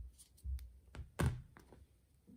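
Soft handling knocks, then a single sharp clunk just over a second in as small metal embroidery scissors are set down on the work surface.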